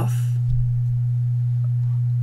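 A steady low hum at one unchanging pitch, the same hum that runs under the narration: electrical hum in the recording.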